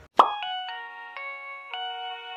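Electronic intro jingle: a sharp pop, then clear chime-like notes entering one after another and ringing on together as a held chord.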